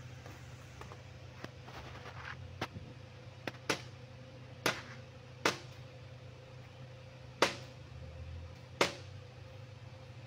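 A claw hammer tapping on a radiator's metal header-plate tabs, about seven light taps at uneven intervals, the loudest about seven and a half seconds in. The taps crimp the tabs down over the tank's sealed edge to clamp it tight.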